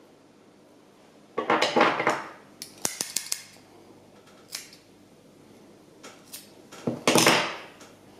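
Small metal fly-tying tools being handled at the bench: two short rattling clatters, about a second in and near the end, with a quick run of light clicks between them.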